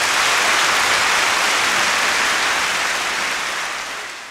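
Audience applauding steadily after the orchestra's final chord, tapering off near the end.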